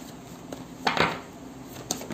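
Tarot cards being handled and set down on a table: a couple of sharp knocks about a second in, the loudest sound here, and another short knock near the end.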